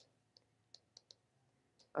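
Faint, irregular ticks of a stylus pen tip tapping on a tablet surface while a word is handwritten, about six in two seconds.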